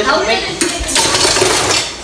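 Dishes and cutlery clinking in a stainless-steel kitchen sink during hand washing. Tap water runs for about a second in the middle as the dishes are rinsed.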